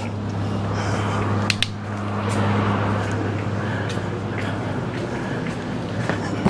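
Steady low hum of workshop background noise, with handling rustle and a couple of light clicks about one and a half seconds in.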